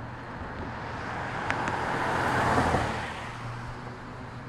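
A car passing on the street, its tyre and engine noise swelling to a peak a little past halfway and then fading, over a steady low hum.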